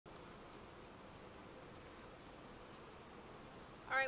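Faint buzzing of honeybees around the hive, a low steady hum, with brief high chirps at the start, about a second and a half in and near the end, and a rapid high trill during the second half.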